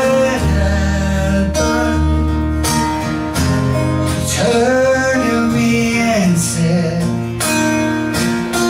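A live acoustic guitar being strummed, with a male voice singing over it.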